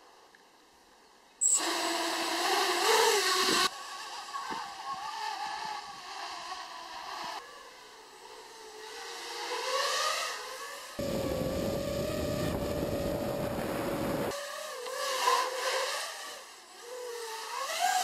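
A 225 mm FPV racing quadcopter's brushless motors and propellers whining, the pitch rising and falling with the throttle, in several short clips cut together, with one steadier stretch in the middle. It starts about a second and a half in.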